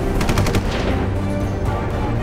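A short burst of rapid automatic gunfire, lasting about half a second near the start, over a dramatic music bed, followed by a falling swish.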